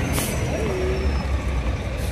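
A heavy dumpster truck's diesel engine rumbling close by, with a short burst of air-brake hiss just after the start.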